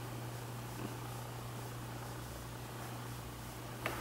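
A steady low hum under a faint hiss, with one soft tick near the end.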